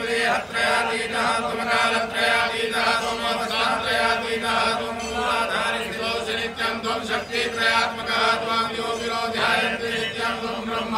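Men's voices chanting Sanskrit havan mantras in a continuous, rhythmic recitation, over a steady low drone.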